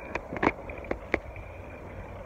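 Handling noise from a phone held in the hand while riding a bicycle: a few short, sharp clicks and knocks in the first second or so, over a low rumble.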